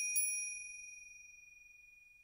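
A bell-like ding used as a transition sound effect: a clear, high metallic tone struck lightly again just after the start, ringing on and fading away over about two seconds.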